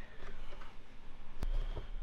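Quiet handling of a small white plastic NAS enclosure in the hands, with one sharp click about one and a half seconds in and a couple of faint ticks after it.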